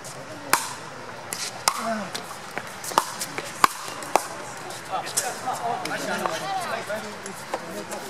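Pickleball rally: paddles hitting a plastic pickleball back and forth, a string of sharp pops over the first four seconds or so, the loudest about three and a half seconds in. Spectators talk underneath.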